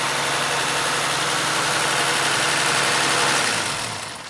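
Mercedes-Benz W116 280S's twin-cam, carburetted straight-six idling steadily with the bonnet open, an even hum under a hiss; the engine runs as it should, its carburettor overhauled. The sound dies down near the end.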